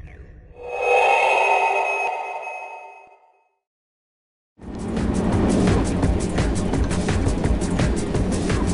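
A sustained synth chime-like chord from the title sequence swells and fades away over about three seconds, then about a second of silence. A dense, steady rumble of car engine and road noise, heard from inside a moving car, then starts suddenly and carries on.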